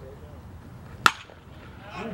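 A baseball bat hitting a pitched ball: a single sharp crack about a second in, by far the loudest sound, with a brief ring after it. The contact puts the ball in play as a fly ball.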